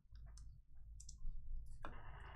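Faint small clicks and light rustling of trading cards being handled, with a short rustle near the end.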